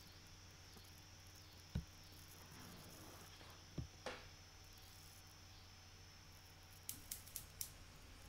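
Near silence over a low steady hum, with faint thumps about two and four seconds in and a quick run of faint clicks near the end.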